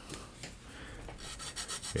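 Sanding stick rubbed back and forth over a plastic model-kit part to smooth out a mould seam. It is faint at first, then about halfway through comes a quick run of short, even strokes.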